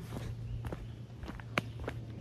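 Footsteps of a man walking at a steady pace on a forest dirt trail strewn with roots and rocks, about five short steps over two seconds, one louder than the rest a bit past halfway.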